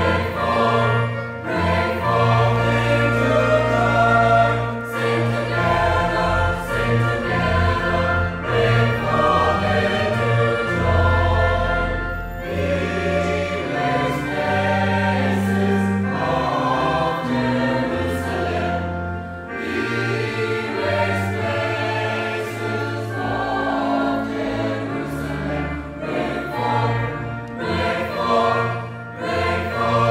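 Mixed church choir of women's and men's voices singing a Christmas anthem in parts, with sustained low notes underneath that change in steps.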